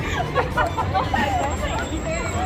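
Overlapping voices of a group of women chattering at once, over a steady low rumble.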